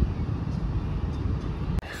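Steady low rumble of outdoor background noise with no distinct events, broken by a short click and a brief drop near the end.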